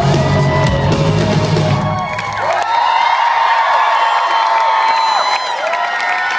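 Live rock band playing the final bars of a song, with drums and bass stopping about two and a half seconds in; the audience cheers and whoops as the sound rings out.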